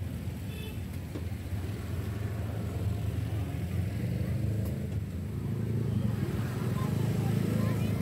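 Busy street ambience: a steady low rumble of motorbikes and cars going by, growing a little louder partway through, with indistinct voices of people around.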